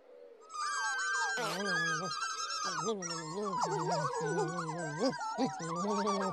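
Wordless chattering of several small children's-TV puppet characters, the Pontipines, with several voices overlapping. The chatter starts about half a second in and continues to the end.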